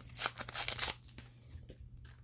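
Plastic sleeve of a trading-card booster pack being torn open, a crinkly tearing sound in the first second, followed by quieter rustling and small clicks as the pack is handled.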